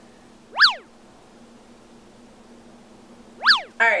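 Two identical cartoon-style "boing" sound effects, each a quick pitch sweep that rises and falls back, about three seconds apart, with a faint steady hum between them.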